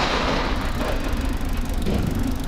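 Steady rushing noise of a moving bicycle: wind on the microphone and road rumble.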